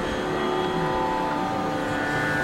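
Carnatic concert music: a steady drone of held tones with no percussion strokes, as the mandolin and violin ensemble sustains pitch before the piece gets going.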